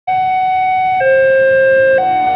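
Railway level-crossing warning alarm sounding from the signal's horn loudspeaker: an electronic two-tone signal that alternates between a higher and a lower note, each held for about a second.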